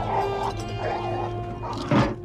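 Orchestral film score of held, sustained tones over a low drone, with a dog barking and yipping over it. A loud sudden hit comes near the end, and the music falls away right after.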